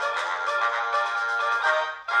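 Background music: an instrumental children's track with a melody of pitched notes.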